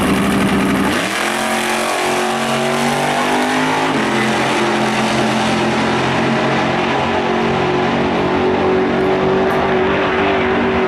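Two drag-racing cars launching from the starting line. Heavy low engine note, then about a second in the engines pull away, climbing in pitch in steps as they shift through the gears, and settle into a steady high drone as they run down the strip.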